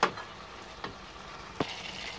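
Tomato-and-spice masala sizzling softly in oil in a steel pot as it is fried down until the oil separates. A silicone spatula gives three light knocks against the pot, roughly a second apart.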